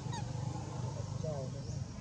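Two brief calls over a steady low rumble: a quick high chirp falling in pitch just after the start, and a short honk-like call about a second in.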